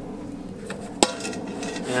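A metal sieve knocks against a metal pot as it is set down: one sharp clank with a brief ring about halfway through, then a few lighter knocks.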